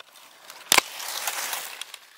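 Footsteps through dry leaf litter and brush: a sharp snap about three-quarters of a second in, then about a second of crunching and rustling leaves.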